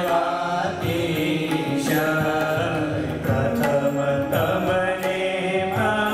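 A man chanting a Hindu devotional hymn in phrases of long, wavering held notes.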